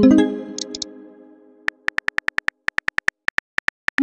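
Synthesized chat-app sound effects: a pitched message chime at the start that dies away over about a second and a half, then a quick, even run of keyboard-tap clicks, about six a second, and a rising tone right at the end.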